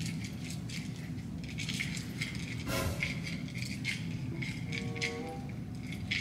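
Background music with a steady beat and crisp, evenly repeating ticks.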